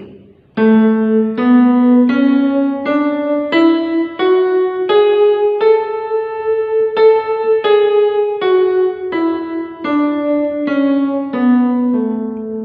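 Yamaha portable keyboard playing the A major scale one note at a time. It climbs an octave, note by note, from A to the A above, holds the top note a little longer, and then steps back down to the starting A.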